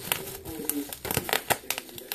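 Bubble wrap crinkling as it is handled and pulled apart, with a run of irregular sharp crackles and clicks.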